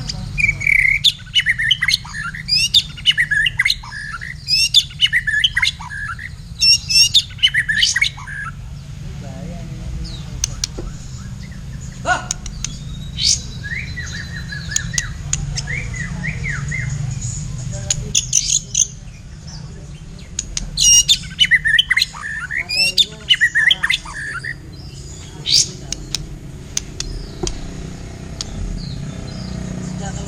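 Caged songbirds in a singing duel, a white-rumped shama (murai batu) and a kapas tembak bulbul, pouring out fast, dense runs of whistles and chatter. The song comes in two long bouts, one at the start and one past the middle, with scattered single calls between them and near the end. A steady low hum runs underneath.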